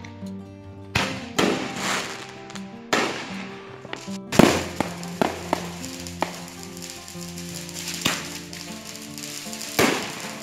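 Aerial fireworks bursting overhead: a string of sharp bangs at uneven intervals, the loudest about four and a half seconds in. Music with held notes plays underneath.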